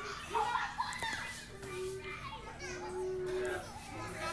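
Children's voices chattering and calling out in the background, with no clear words; one voice holds a steady note for about a second in the second half.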